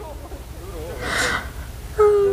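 A woman's stifled laugh behind a hand over her mouth: one short, breathy gasp about a second in, with faint speech underneath.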